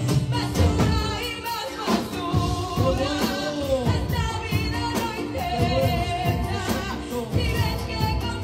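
A worship song sung live by women into handheld microphones over instrumental backing, amplified through a PA.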